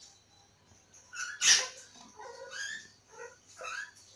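An animal's short, high-pitched calls, three of them, the first and loudest about a second and a half in.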